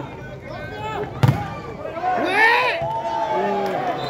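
A single sharp smack of a volleyball being hit hard about a second in, followed by players and spectators shouting, with one long drawn-out shout.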